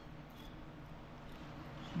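Faint, steady room noise with quiet chewing of a soft biscuit that melts in the mouth, with no crunches.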